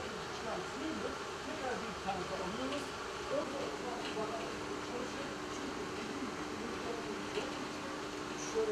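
Indistinct talk from a group of people over the steady hum of water-treatment plant equipment. About three and a half seconds in, a steady humming tone sets in and holds.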